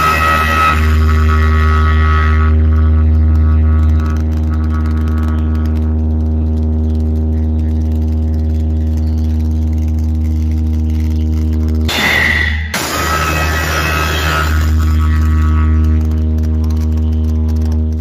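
Large DJ speaker stack playing a sound-test track at high volume: a long, steady deep bass drone with held tones stacked above it. It cuts out briefly about twelve seconds in, then comes straight back.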